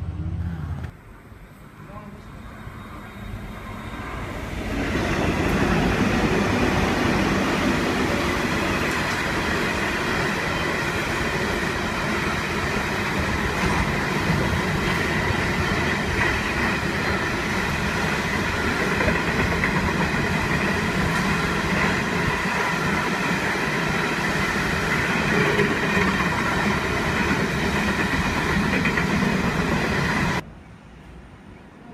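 Coal train of hopper wagons rolling past at close range: a loud, steady rumble of wheels on rail with a faint ringing above it. It builds over the first five seconds as the train draws near, then holds steady.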